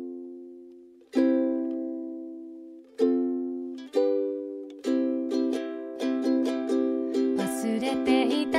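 Song intro on ukulele: single strummed chords left to ring and fade, a couple of seconds apart, then a steady strumming rhythm from about five seconds in. A voice begins singing near the end.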